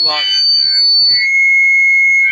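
Microphone feedback through the PA: a loud, steady, high-pitched squeal that holds one pitch, then jumps to a lower one a little over a second in.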